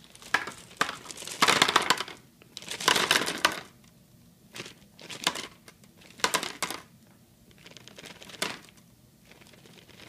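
Plastic candy bag crinkling as peanut butter M&M's are shaken out of it a few at a time, the candies clicking as they drop into a foam bowl on a digital kitchen scale. It comes in about five short bursts, loudest in the first few seconds.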